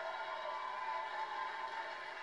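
Stadium crowd cheering after a run scores, a steady wash of voices heard through a television speaker.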